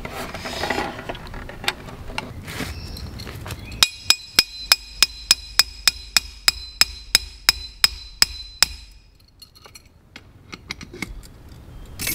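A wooden folding table being handled and unfolded, wood rubbing and knocking. Then a metal lantern-hanger pole is driven into the ground with about sixteen quick hammer blows, roughly three a second, each ringing like struck steel, stopping suddenly; these blows are the loudest sounds.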